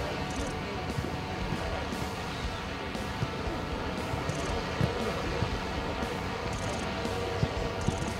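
Footballs being kicked on a grass pitch, a few short sharp thuds, the clearest about five seconds in and near the end, over a steady background hum.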